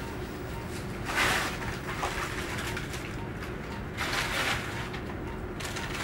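Steady low room noise with two brief soft swishes, about a second in and again about four seconds in.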